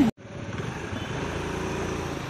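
Steady roadside traffic with a motor engine running, after a brief drop-out of sound at the very start.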